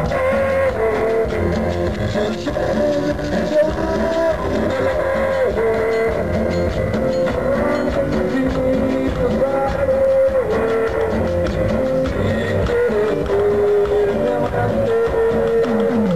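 Live cumbia band playing: a sustained keyboard melody moving in steps over drums, percussion and bass, with a steady rhythm throughout.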